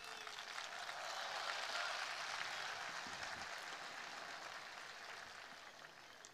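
Faint audience applause in a hall, swelling in the first two seconds and dying away before the end.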